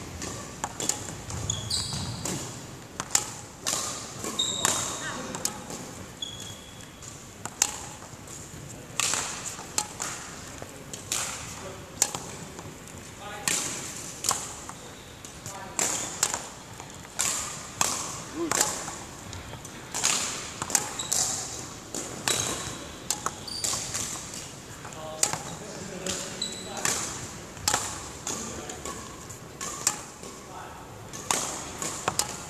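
Badminton shoes landing and squeaking on a wooden sports-hall floor during a solo court-movement drill, a sharp step or stomp every second or two with short high squeaks now and then.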